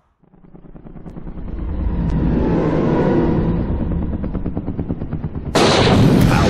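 Rapid automatic-gunfire sound effect, a fast rattle of shots that builds up over the first couple of seconds and then holds steady. A sudden loud blast cuts in near the end.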